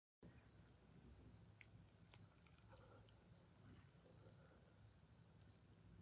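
Faint, steady high-pitched insect chirring, like crickets, running throughout, with a few soft clicks.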